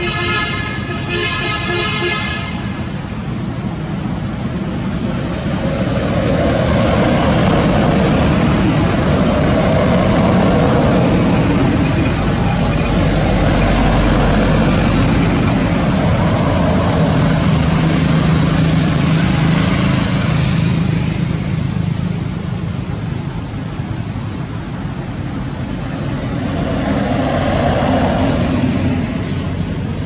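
Road traffic noise from passing vehicles: a steady engine and tyre rumble that swells and fades twice.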